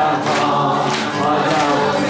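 A congregation singing a worship song together, with hand clapping.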